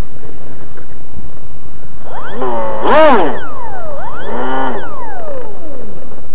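Brushless electric motor of an RC foam jet spinning a 6x5.5 APC pusher propeller, throttled up and back down twice: a whine that rises and falls in pitch, the first run peaking about three seconds in, the second just after four seconds.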